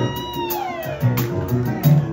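Live rock band playing a steady groove, with a long wailing high note over it that rises briefly and then slides slowly down over about a second.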